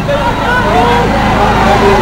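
A man speaking into a handheld microphone, his voice carried over a steady low hum.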